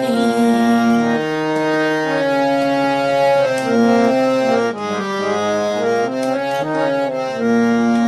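Harmonium playing a melody, its reedy notes changing every half second to a second over a steady held low note, with no singing.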